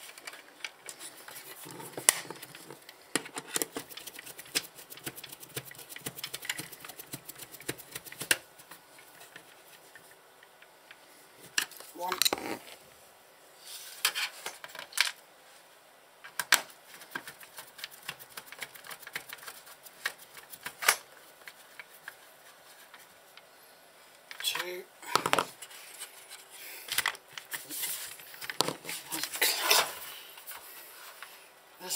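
Hand tools and small screws clicking, tapping and scraping against the metal chassis of a Sky+ HD satellite receiver as screws are worked in, in scattered irregular taps with a few louder knocks near the middle and near the end.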